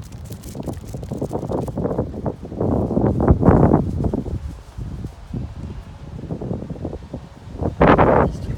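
Wind buffeting the phone's microphone in uneven gusts, loudest about three to four seconds in, with a sharp louder gust just before the end.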